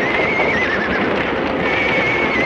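Horses whinnying in panic in a burning barn: two long, wavering high-pitched whinnies, the second starting near the end, over a dense clatter of hooves.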